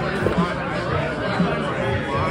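Crowd chatter: many people talking at once in a crowded bar room.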